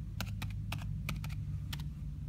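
Typing on a computer keyboard: a quick, uneven run of about seven keystrokes as a short comment is typed and posted.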